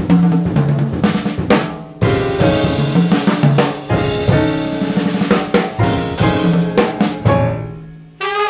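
Jazz drum kit played busily: snare rolls and fills over bass drum, with a cymbal crash about two seconds in and again near six seconds.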